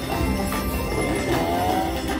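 Video slot machine's game music and win sound effects playing continuously as the win meter counts up.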